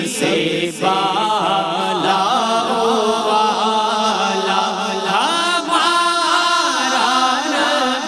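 A man's voice singing a naat, an Urdu devotional poem in praise of the Prophet, into a microphone, with long held notes that waver and glide.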